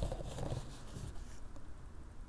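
Faint rustle and scrape of a cardboard tissue box being handled over a wicker tissue-box cover in the first half second, then quiet room tone with a low hum.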